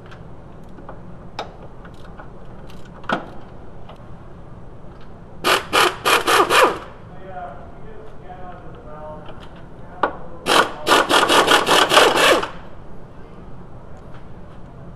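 Large ratchet clicking as it is worked back and forth on a starter mounting bolt: a short run of quick clicks about five seconds in, and a longer run of about a dozen clicks around ten to twelve seconds in.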